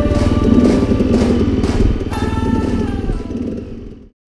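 KTM 300 two-stroke dirt bike engine running, mixed with a background music track; both fade out near the end.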